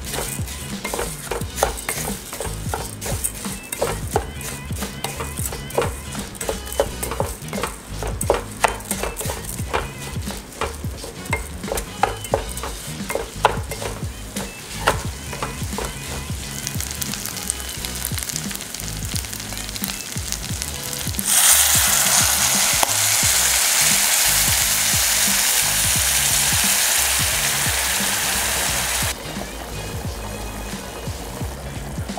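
Wooden spatula stirring and scraping rice in a hot steel pan, with many small scrapes and clicks as the grains fry in squid ink. About two-thirds of the way in, a loud steady sizzle starts suddenly as liquid hits the hot pan, and it cuts off sharply shortly before the end.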